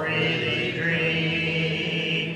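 Congregation of men and women singing a hymn a cappella, holding one long note and moving to another a little under a second in.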